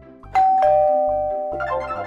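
A two-note ding-dong chime, a higher note then a lower one, ringing out slowly over light background music with a steady low beat, as a subscribe-button sound effect.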